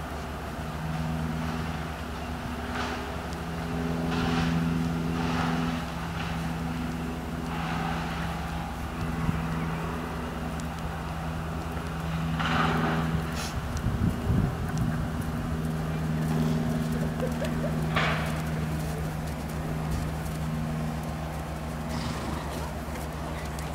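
A steady engine hum that swells and fades at intervals, with a brief low rumble about two-thirds of the way through.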